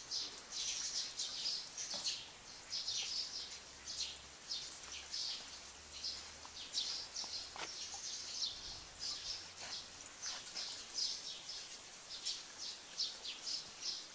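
Small birds chirping: many short, high chirps in quick succession, over a faint outdoor background.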